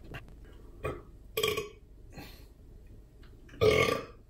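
A man burping: a short burp about a second and a half in and a louder one near the end, with smaller throat sounds between.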